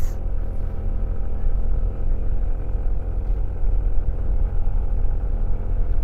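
Yamaha NMAX scooter's single-cylinder engine running at a steady cruising speed, heard over a heavy low wind rumble on the microphone while riding.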